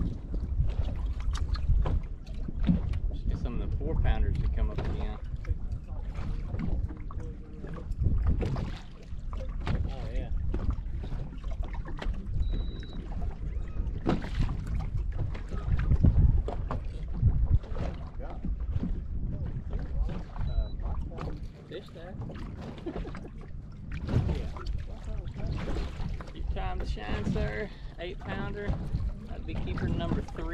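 Wind buffeting the microphone and choppy water slapping against the hull of a bass boat: an uneven low rumble that swells and dips. Low, indistinct voices come through a few seconds in and again near the end.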